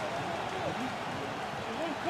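Faint shouts of players on the pitch heard through the open air of an empty stadium, over a steady background hiss.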